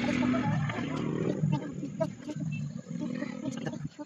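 A small child's hoarse, raspy voice vocalizing and babbling without clear words, in short pitched stretches that stop and start.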